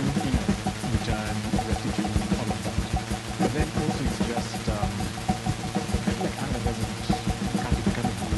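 Live electronic music from a Moog synthesizer: a fast, even low pulse over a steady low drone, with short gliding tones rising and falling above it.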